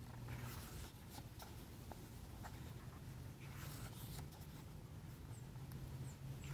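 Pages of a glossy photo book being handled and turned by hand: faint paper swishes and slides, a couple of them longer, with small ticks of the paper, over a low steady hum.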